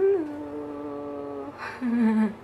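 A woman's voice humming a long held note that dips slightly at its start, followed near the end by a second, shorter and lower hummed note.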